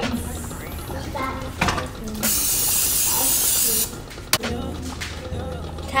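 An aerosol can of cooking spray hissing in one steady burst of about a second and a half, greasing the pan for the next pancake. A sharp click follows soon after it stops.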